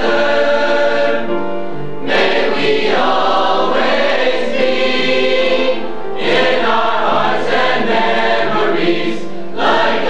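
Mixed-voice school choir singing a song in harmony, in long held phrases with short breaks between them about two and six seconds in.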